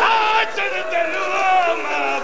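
A man's voice in loud, sung recitation, holding long notes whose pitch wavers and slides, with a short break about half a second in.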